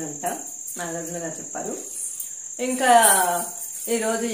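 A woman talking, loudest about three seconds in, over a thin, steady high-pitched whine that never changes.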